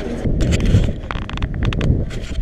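Wind buffeting a GoPro's microphone in an uneven low rumble, with scattered sharp clicks and knocks.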